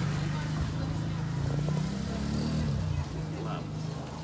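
A motor vehicle engine running close by, its pitch rising about two seconds in and then falling away, with the sound dropping off near the end.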